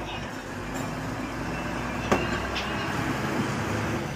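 Road traffic with a steady low engine rumble that builds slightly, and a single sharp click about two seconds in.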